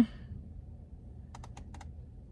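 A pause with a low steady hum and a quick run of about five faint, sharp clicks a little past halfway through.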